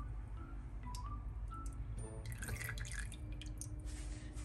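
Olive oil poured from a bottle into rice and water in a rice-cooker pot: a thin stream trickling and dripping onto the water, with a cluster of drips and small splashes a little past halfway.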